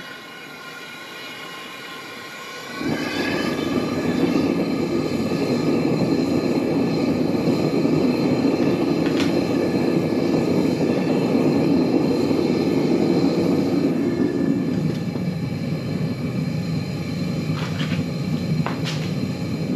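Gas burner of a homemade melting furnace running after lighting. It starts as a lighter hiss, then about three seconds in the gas is turned up and it settles into a loud, steady roar, with a couple of sharp clicks near the end.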